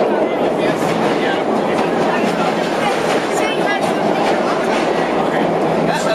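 Vintage R1/R9-series IND subway train running through a tunnel, heard from inside the car at the front window: a loud, steady rumble of wheels on rails and car noise with no let-up.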